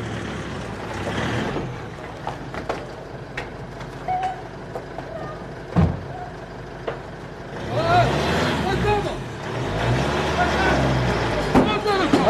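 Pickup truck engine running as the truck drives slowly past, with a few light clicks and one sharp knock about six seconds in. Near the end people shout "Ay!" over the engine.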